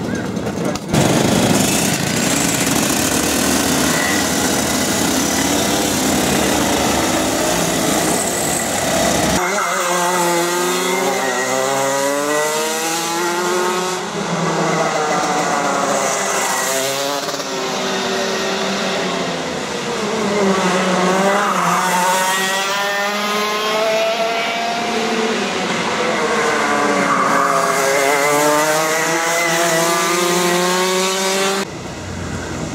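Rotax Max 125 cc two-stroke kart engines running as the karts leave the pits, a dense noisy sound. About nine seconds in, this gives way to karts on track, engine pitch climbing and dropping again and again as they accelerate out of corners and lift off into them.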